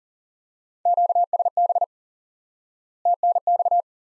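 Morse code sent at 40 words per minute as keyed beeps of one steady tone: two short groups about two seconds apart, the second shorter than the first. It is the repeat of the two elements just spoken, QSB then TNX (thanks).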